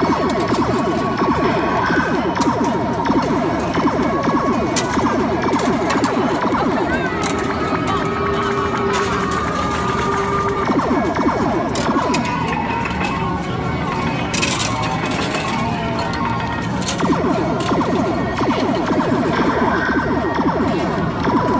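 Busy video-arcade din: overlapping electronic game music and machine sound effects over a babble of voices, with scattered sharp clicks.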